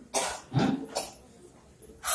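A man coughing three times in quick succession into a microphone.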